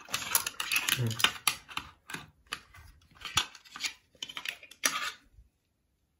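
Small hard-plastic toy shooter parts clicking and knocking as they are handled and pushed together, an irregular run of sharp clicks that stops about five seconds in.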